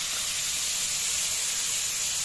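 Spice-coated hilsa fish steaks frying in hot oil in a wok: a steady sizzling hiss.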